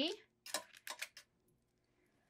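About five light, quick clicks and taps of a clear acrylic stamp block being picked up and handled on a stamping platform, then faint rustling.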